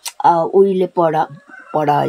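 An elderly woman speaking in short phrases with brief pauses between them.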